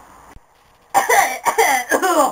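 A person's voice making short non-word vocal sounds in a quick run of bursts, starting about a second in after a brief quiet moment.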